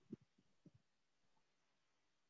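Near silence with a few faint, short low knocks in the first second, from a marker being written on a whiteboard on an easel.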